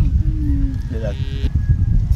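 A small group laughing, in short pitched bursts, with wind rumbling on the microphone.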